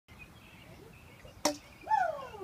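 A yellow plastic toy bat hits a ball with one sharp crack near the end, followed at once by a voice calling out with a falling pitch.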